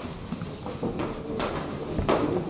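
Computer keyboard typing: a run of irregular key clicks as a short phrase is typed.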